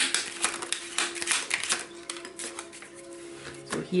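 A deck of cards being shuffled by hand: quick papery clicks, densest over the first two seconds and sparser after. Soft music with a steady held note plays underneath.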